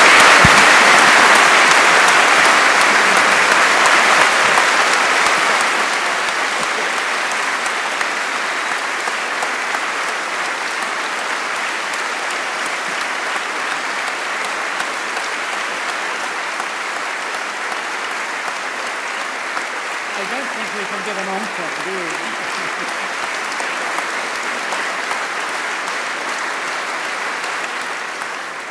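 A large audience applauding steadily, loudest at the start and easing off slightly after about six seconds.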